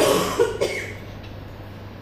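A man coughing once, a short loud burst right at the start, followed by a quiet pause with a steady low hum.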